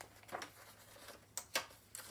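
Faint handling of a picture book's paper pages: a few light clicks and rustles over quiet room hiss.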